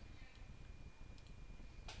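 Quiet room tone with a few faint, sharp clicks spread through it, over a low hum and a faint steady high-pitched whine.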